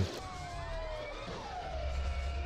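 Sirens wailing in the film's soundtrack, several overlapping tones sliding down in pitch, with a low engine rumble coming in near the end.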